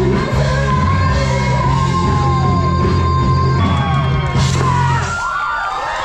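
Live rock band with singers, a long held sung note over heavy bass and drums. A little after five seconds in, the bass and drums drop out, leaving sliding voices and whoops.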